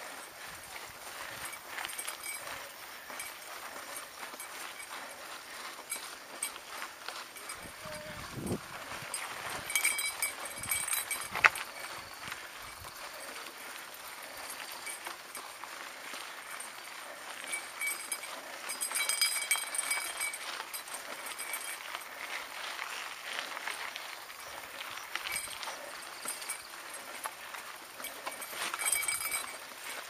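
Mountain bike riding over a rough dirt trail: tyres crunching over dirt and grit and the bike rattling, with scattered knocks from bumps and one sharp knock about eleven seconds in.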